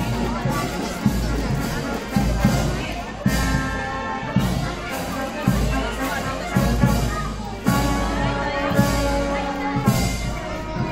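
Marching band playing in the street, a steady drumbeat falling about once a second under sustained melody notes, with crowd voices mixed in.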